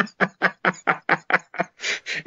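A man laughing in a run of short, even bursts, about four or five a second, trailing off into a breathy exhale near the end.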